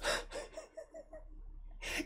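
A man chuckling quietly: a quick run of about five short, breathy laughs, then softer breathing.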